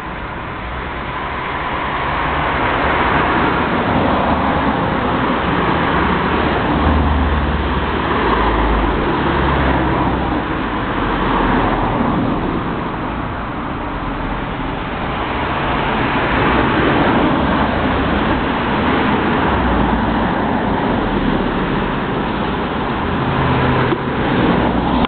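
Road traffic passing: a continuous rushing noise that swells and eases over several seconds, with a low rumble underneath.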